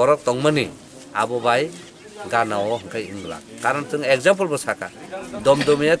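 Speech only: a man talking steadily in a language the recogniser did not transcribe.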